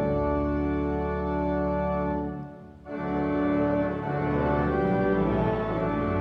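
Church organ playing a hymn in slow, sustained chords. There is a brief break between phrases about two and a half seconds in.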